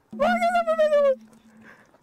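A young man's high-pitched, drawn-out wail of fright, about a second long and falling slightly in pitch, with a low steady hum running on faintly after it.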